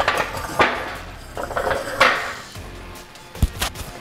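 Steel clanks of a loaded Rogue yoke being lowered onto its pins: a few sharp metal knocks that ring on, the loudest about half a second and two seconds in, with lighter ones near the end.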